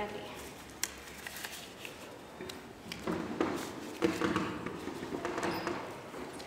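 Disposable gloves being pulled onto the hands: rubbery rustling and handling clicks, with a sharp click about a second in. Indistinct voices can be heard in the background in the second half.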